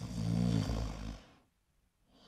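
One cartoon snore, about a second long, from a sleeping character.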